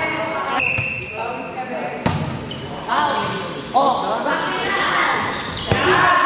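Players' voices shouting and calling out in an echoing gym, with a volleyball hitting sharply twice, about two seconds in and again near the end.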